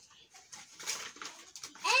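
Tissue paper rustling and crinkling as it is handled and pulled out of a cardboard box, in quick irregular crackles. A child's voice begins right at the end.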